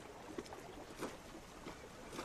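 Faint water lapping gently around a floating block of ice, with two small clicks about half a second and a second in.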